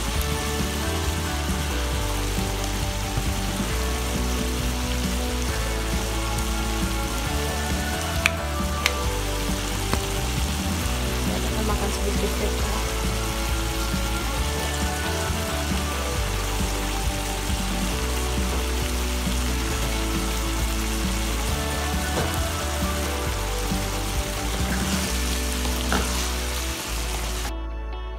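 Chicken and vegetables sizzling as they stir-fry in a frying pan, under soft background music, with two brief clicks about eight seconds in. The sizzling stops shortly before the end, leaving only the music.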